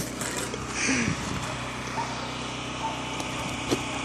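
A small engine running steadily, with a short laugh about a second in.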